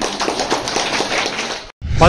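Group applause: many hands clapping together, cut off suddenly near the end.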